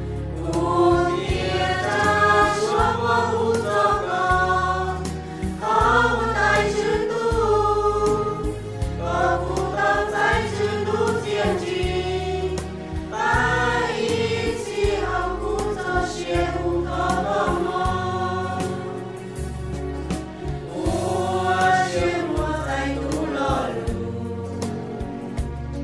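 Christian song sung by a choir, with instrumental backing: a steady bass line and beat under sung phrases that rise and fall.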